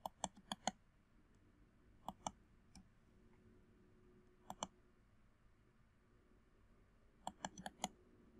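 Computer mouse clicking in short clusters: a few quick clicks at the start, a pair about two seconds in, another pair halfway through, and a quick run of clicks near the end, over a faint room hush.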